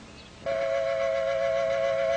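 Soundtrack music: quiet at first, then about half a second in a woodwind, flute-like, comes in playing two notes held together, steady and unwavering.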